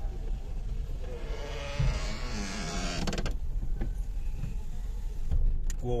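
Car cabin sound while driving slowly: a steady low engine and road rumble, with a rushing hiss lasting about two seconds, starting about a second and a half in.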